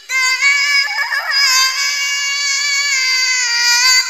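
Melodic Qur'an recitation: a single high voice starts a new phrase after a breath and holds one long note, with a small ornamented turn near the end.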